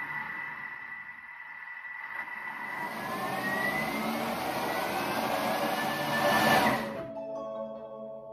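Thermomix TM6 motor blending a pot of hot pumpkin soup. It runs with a steady whine at first, then rises in pitch and gets louder as the speed is raised toward 8. It cuts off suddenly about seven seconds in, leaving a few steady tones fading out.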